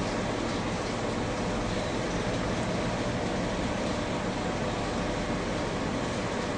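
Steady background hiss with a faint low hum: room tone with no distinct event.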